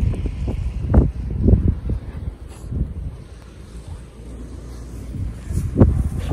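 Wind buffeting the microphone outdoors: a low, uneven rumble with stronger gusts about a second in and again near the end.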